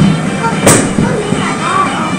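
Indistinct voices over the steady low hum of a football match broadcast's sound, with one sharp click or knock about two-thirds of a second in.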